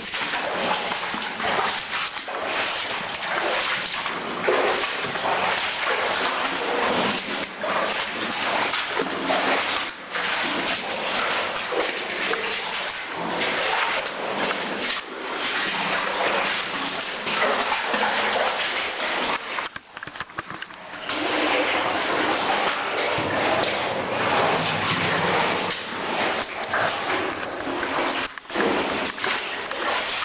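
Feet splashing and sloshing through shallow water along the floor of an old mine tunnel, an uneven run of splashes that stops briefly about twenty seconds in.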